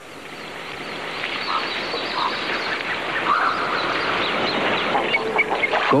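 Goldeneye ducks calling in short, scattered notes over a steady wash of water noise that swells over the first few seconds.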